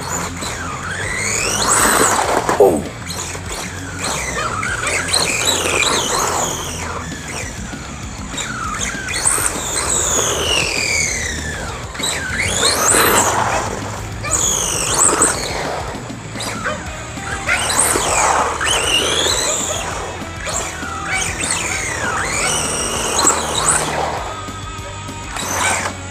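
Electric motor and gears of an LC Racing 1/14-scale RC truggy whining, the pitch climbing and falling again and again as it speeds up and slows down, with tyre noise on asphalt.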